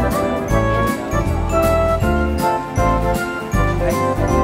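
Background music track with a steady beat and high chiming notes, laid over the video.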